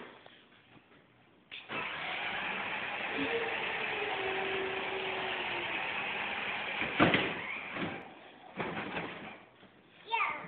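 Electric ride-on toy Mini Cooper's drive motors whirring steadily as it rolls across a concrete floor. The whirring starts about a second and a half in and stops about eight seconds in, with a sharp knock shortly before it stops.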